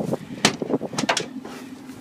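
Cab door of a 1969 International Harvester 1300 truck being unlatched and opened: one sharp metallic click about half a second in, then a few lighter clicks and rattles about a second in.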